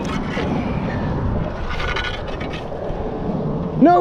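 A magnet being hauled up on its rope and scraping and knocking against a concrete seawall, with low rumble under it. A man's excited shout starts near the end.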